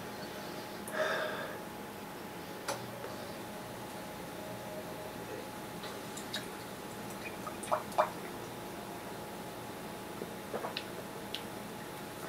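A man sipping beer from a glass in a quiet room: a soft breath out about a second in, then a few faint clicks and two brief squeaky sounds close together a little past the middle.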